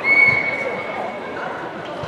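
Volleyball referee's whistle blown once, a single steady high tone lasting about a second and a half and fading out: the first referee's signal authorizing the serve.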